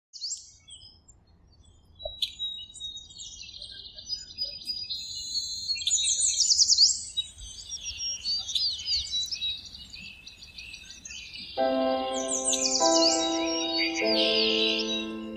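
Many small birds chirping and trilling, with quick high falling notes. Near the end, soft music enters with long held chords under the birdsong.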